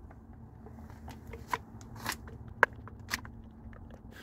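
Motor oil pouring from a plastic gallon jug into an engine's oil fill neck, faint, with five or six sharp clicks and crackles scattered through it.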